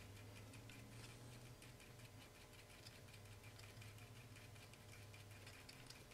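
Near silence: faint rapid ticking of a thin stir rod working in a small paper cup of model paint as it is mixed, over a low steady air-conditioner hum.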